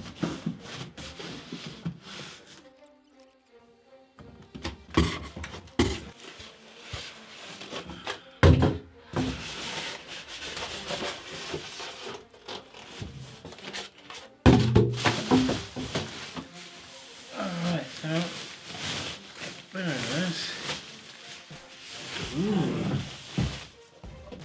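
Packaging being handled: cardboard box flaps and foam inserts rubbed and knocked, and a plastic bag around a large speaker rustling, with several loud thunks as the speaker is pulled out and set down.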